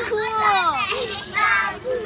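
Young children's voices talking and calling out in high pitch that rises and falls.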